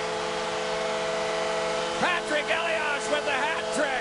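Arena goal horn sounding a steady, held chord over crowd noise, signalling a home-team goal; a commentator's voice comes in about two seconds in.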